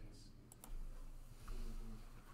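Two quick sharp clicks about half a second in, from the computer being used to start a slideshow, over a low steady room hum.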